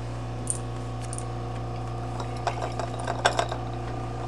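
Small clicks and clinks as small objects are handled in a porcelain teacup on its saucer. There are a few faint ticks in the first second and a cluster of sharper clicks in the second half, over a steady low hum.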